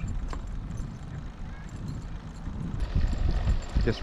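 Low, uneven rumble of a recumbent trike rolling slowly along a paved path, heard on a handlebar camera, with a sharp click about a third of a second in.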